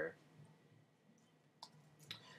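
A keyboard key clicking once, sharply, about one and a half seconds in, over faint room tone, as code is typed on a computer keyboard.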